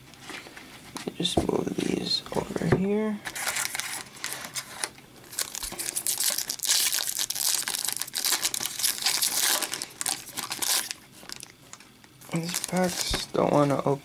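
Foil wrapper of a hockey card pack crinkling and tearing as it is ripped open by hand, a dense crackle lasting about eight seconds.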